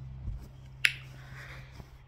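A single sharp click about a second in, over a faint, steady low hum.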